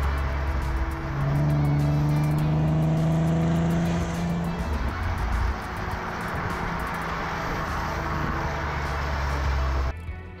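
Volkswagen Golf R32's 3.2-litre VR6 engine heard at the twin tailpipes while driving, with road and wind rush. Its note rises steadily for a few seconds as the car pulls, then settles into a steadier run.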